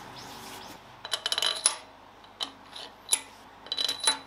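Steel cylinder-head bolts for a Kent engine clinking against one another in a gloved hand and against the cylinder head as they are set in place. A scattered series of light metallic clinks with a brief high ring, bunched about a second in and again near the end.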